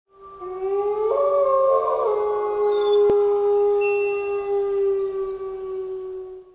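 Audio logo sting of several sustained, layered tones that change pitch about one and two seconds in, then hold one steady chord that fades away. A single sharp click sounds about halfway through.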